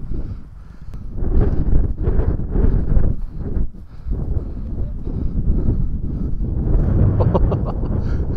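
Wind buffeting the microphone, with footsteps and rustling through dry scrub as people walk uphill; the noise comes in uneven surges.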